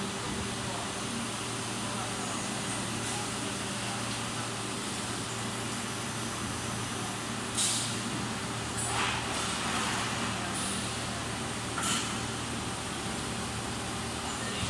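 Steady hum of a PET preform injection moulding machine running, with three short hisses of compressed air, the loudest about seven and a half seconds in.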